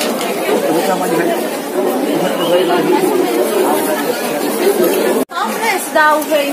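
Babble of many overlapping voices from market shoppers and stallholders, with no single voice standing out. It cuts off abruptly about five seconds in at an edit, after which a nearer voice is heard more clearly.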